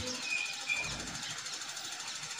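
Steady, machine-like background hum with two brief, faint high whistle-like tones in the first second.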